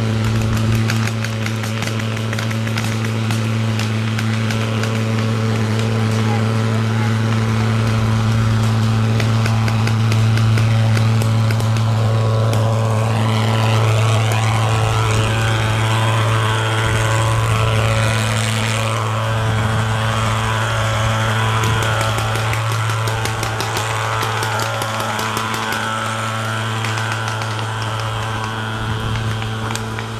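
Paintball markers firing in quick, irregular pops over a steady low drone. A hiss rises about thirteen seconds in and cuts off suddenly about six seconds later.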